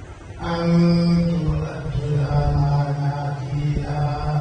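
A man's voice chanting in long held notes, in the melodic style of Arabic Quran recitation, starting about half a second in.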